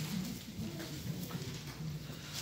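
Faint rustling and a few light knocks as Bible pages are turned to find a passage, over a low steady room hum.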